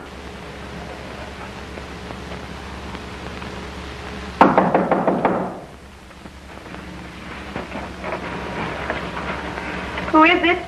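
Steady hum and hiss of an old film soundtrack, broken about four seconds in by a sudden loud noise that lasts about a second, followed by faint scattered sounds.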